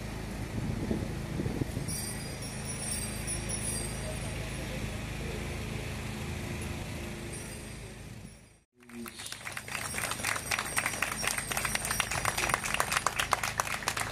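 Steady outdoor street noise with a low hum. After a brief dropout about eight and a half seconds in, a crowd starts clapping, growing louder toward the end.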